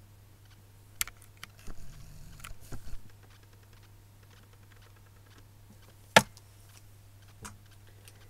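Plastic mascara tubes and their cardboard packaging handled and put down on a wooden shelf: scattered light clicks and taps about one to three seconds in, and one sharp knock about six seconds in, over a steady low hum.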